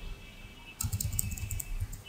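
Computer keyboard keys pressed in a quick run of about half a dozen strokes, starting about a second in: repeated presses deleting a word of text.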